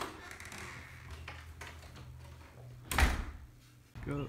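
A house's front door being opened and shut, with one loud bang about three seconds in as it closes.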